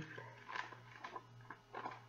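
Near quiet with a steady low hum and a few faint rustles and clicks of a hardcover picture book's pages being handled, a page turned near the end.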